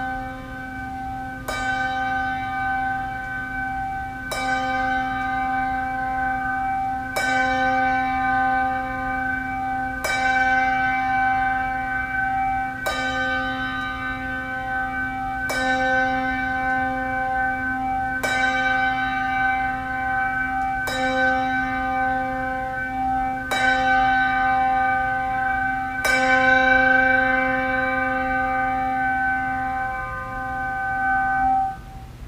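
A single handbell rung slowly to chime the hour: ten strokes about three seconds apart. Each stroke gives the same clear tone, which rings on until the next.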